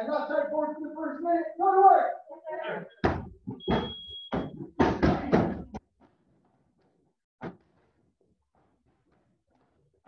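A quick run of dull knocks and thuds lasting about three seconds, with a brief high steady tone among them. One more thud follows a couple of seconds later, then the sound drops out.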